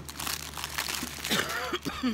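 Plastic packaging bags crinkling and rustling as they are handled, in quick irregular crackles.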